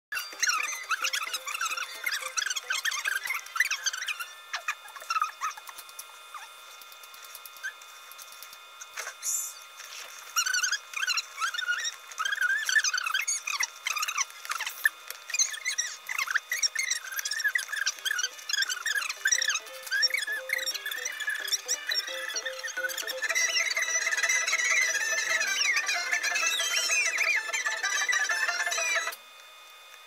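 Fast-forwarded soundtrack heard as high-pitched, squeaky warbling over a few steady tones. It stops suddenly about a second before the end.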